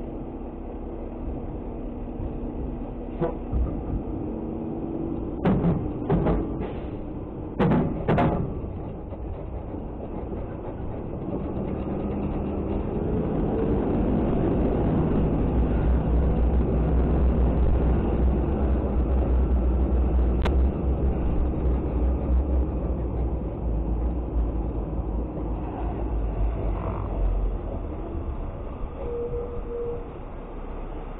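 Diesel engine of an automated side-loader garbage truck running as the truck drives, with a cluster of sharp metallic clanks and rattles about five to eight seconds in. The engine grows louder through the middle stretch, then eases off again.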